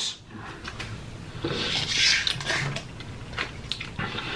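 A small packet crinkling and rustling in the hands, loudest for about a second and a half in the middle, with scattered light clicks and taps of packaging.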